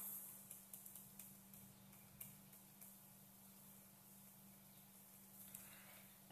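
Near silence: faint room tone with a steady low hum and a few faint, short clicks in the first couple of seconds.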